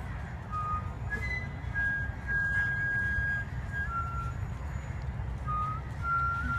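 Flute playing a slow, quiet melody of a few held pure notes, the longest held about a second in the middle, over a steady low rumble.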